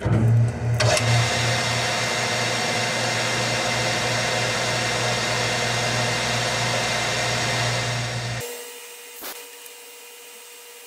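Metal-turning lathe running and cutting a small metal part, a steady whirring hum with a hiss of cutting. It cuts off abruptly about eight seconds in, leaving a faint hum and a single click.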